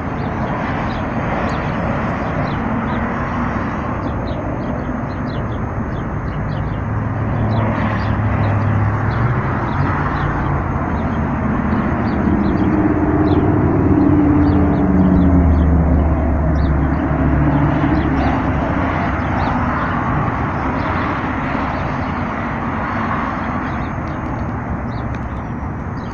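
Continuous outdoor rumble and hiss that swells to its loudest around the middle, then eases off.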